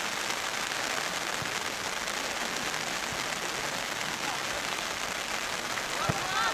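Steady rain falling, an even hiss with no break.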